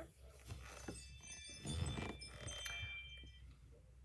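A bright, chiming alert tone from a Ring doorbell notification on an iPad. It sets in about a second in and rings on for a couple of seconds, with light handling clicks on the tablet around it.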